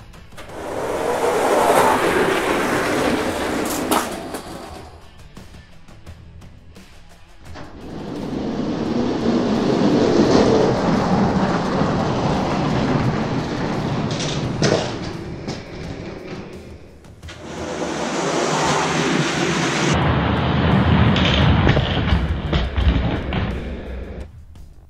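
Die-cast Hot Wheels toy monster trucks rolling down an orange plastic race track. Their wheels make a rumble that builds and fades, heard three times in a row.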